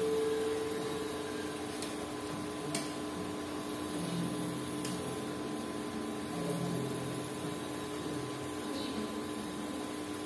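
Steady hum of held tones from the stage sound system, with the band not playing.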